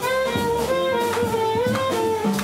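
Live jazz combo playing: a saxophone holds a melody line over electric guitar, upright bass and drum kit with cymbals.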